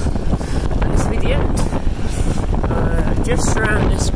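Heavy wind buffeting on the microphone of a camera held out while a bicycle speeds downhill, with a few brief voice-like sounds over it.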